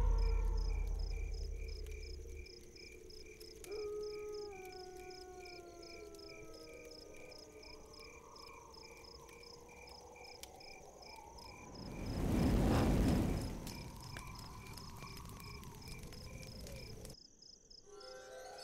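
Eerie film soundtrack of night insect chirping, a steady rapid pulsing, under slow sliding tones, with a deep boom fading away at the start. A swelling whoosh rises and falls about 12 to 14 seconds in, and the sound cuts off about a second before the end.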